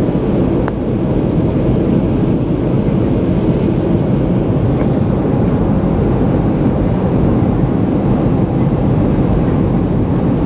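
Cabin noise inside a jet airliner on approach to land: the steady, loud low rumble of the turbofan engines and the airflow over the fuselage, heard through the cabin wall.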